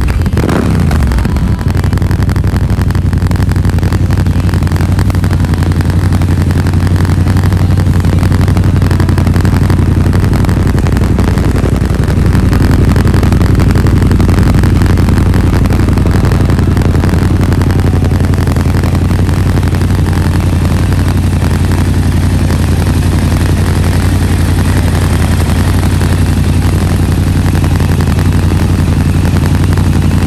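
Yamaha Ténéré 700's 689 cc parallel-twin running through an aftermarket HP Corse titanium high-mount silencer. It drops back from a quick blip of the throttle in the first second or so, then idles steadily.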